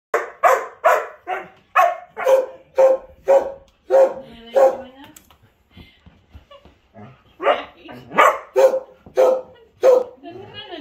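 An Old English sheepdog barking repeatedly, sharp single barks about two a second. The barks break off for a couple of seconds halfway, then start again in a second run.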